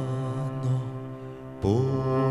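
Male voice singing a slow, held melodic line in the Amis language over the band's instrumental accompaniment, with a new sung phrase beginning near the end.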